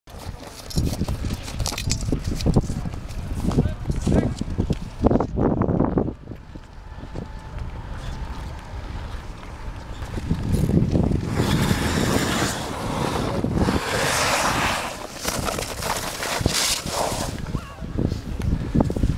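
Ice skate blades scraping and gliding over snow-covered natural ice, with wind rumbling on the microphone; a long scraping hiss of the blades runs through the second half.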